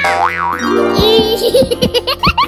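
Cartoon sound effects over cheerful background music with a steady beat: a wobbling, springy boing glide at the start and another wavy high warble about a second in.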